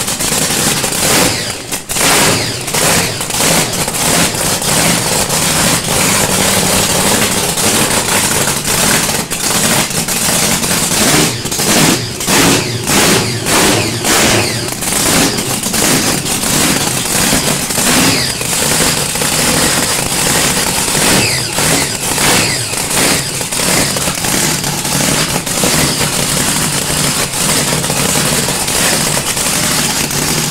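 A drag car's engine running through open, unsilenced exhaust headers, loud and crackling throughout. Its throttle is blipped in a quick series about eleven to fourteen seconds in, with the revs swinging up and down a few more times later.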